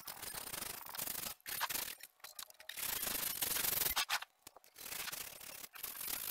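Sandpaper rubbed by hand over oak slats, a hissing scrape in repeated back-and-forth strokes, broken by short pauses about two and four seconds in.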